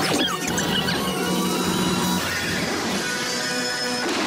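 Cartoon soundtrack: loud music mixed with squealing sound effects, ending in a noisy burst as the taffy ball explodes.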